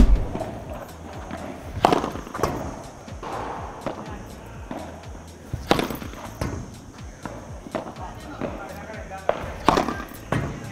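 Padel racket striking the ball in overhead víbora shots: sharp hits about every four seconds, each with a short ring after it.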